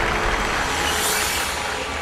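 Studio audience applauding under a show sound effect, a whoosh that swells in the upper range about halfway through as the win is signalled.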